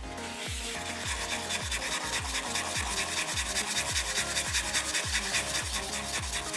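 A tiny piece of Baltic amber rubbed by hand back and forth on fine-grit sandpaper, in quick, even strokes several times a second. It is hand pre-polishing, working the surface smooth after dremeling. Background music with a steady beat plays under it.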